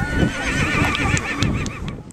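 A horse whinnying: one long quavering call starting about half a second in, with a few sharp clicks near the end.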